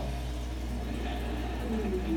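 A steady low hum, with faint talk coming in near the end.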